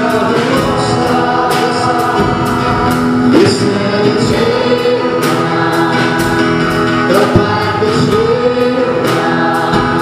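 A worship song sung by a group of voices with band accompaniment and a steady beat.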